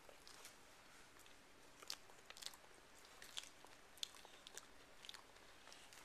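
Near silence with faint, scattered clicks and crinkles, a few a second from about two seconds in.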